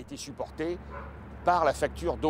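A man speaking in short phrases, with pauses between them and a steady low hum underneath.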